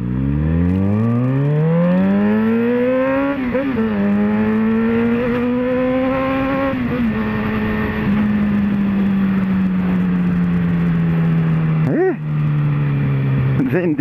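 Motorcycle engine heard from the rider's seat, pulling away and accelerating through the gears. The revs climb, drop at a shift, climb again, then settle into a steady cruise whose note slowly falls. There is a brief rev dip and blip about twelve seconds in.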